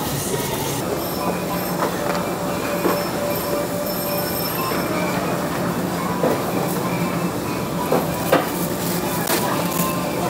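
Shopping trolley rolling over a supermarket floor, with a steady hum and scattered sharp clicks and rustles of plastic produce bags being handled.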